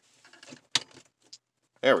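Shift knob on a 2001 Subaru Outback's automatic shift lever being twisted to unscrew it: one sharp click about three quarters of a second in, then a few faint ticks.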